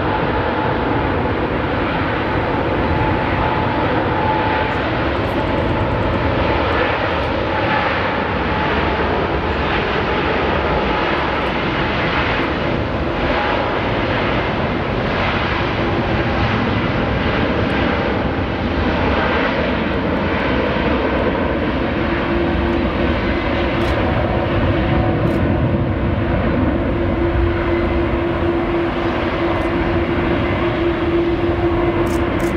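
Twin GE90 turbofans of a Boeing 777-200ER at takeoff thrust during the takeoff roll: a loud, steady jet noise, with a steady low hum that comes in about two-thirds of the way through.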